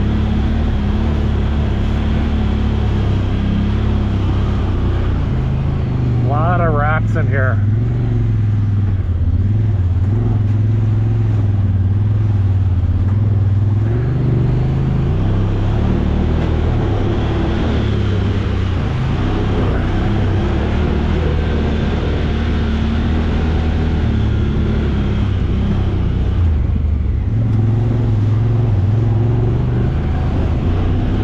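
Honda Talon X side-by-side's parallel-twin engine running steadily as it drives the trail; its pitch rises a little about six seconds in and eases back around fifteen seconds. A brief warbling sound about six to seven seconds in.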